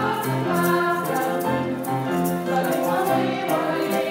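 Live song performance: female voices singing into microphones over grand piano and a violin section.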